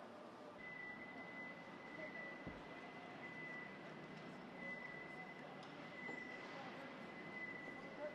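Faint background noise of a large indoor hall, with a thin steady high-pitched whine that starts about half a second in.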